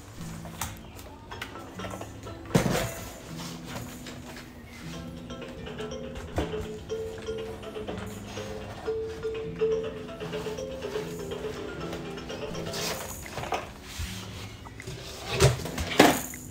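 A simple electronic tune from a toddler's plastic activity-cube toy, played as single steady notes stepping up and down. A few sharp knocks break in, the loudest about two and a half seconds in and more near the end.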